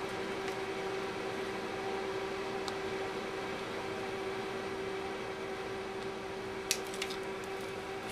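A steady mechanical hum with a low hiss, like a fan or machine running in the room. A few faint clicks of hands handling tape come once near the middle and twice near the end.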